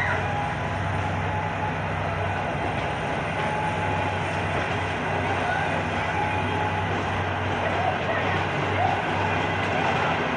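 A long-distance passenger train's coaches rolling past at speed, with a steady, even noise of wheels on the rails and a low hum underneath.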